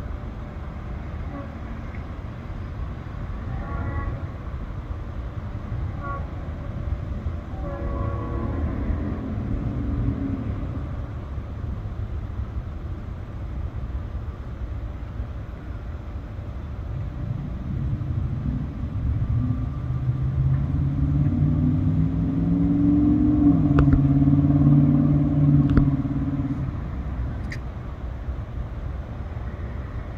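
Low outdoor rumble of road traffic and a distant approaching freight train. A low droning tone builds from about 18 s, is loudest near 24 s, then fades.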